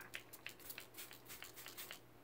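Pump spray bottle of WOW Dream Coat anti-frizz treatment misting onto damp hair: a quick run of short, faint spritzes, several a second.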